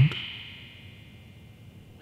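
A soft, high sustained tone from the film's background music fades out in the first half second. After that there is only faint, steady room hiss.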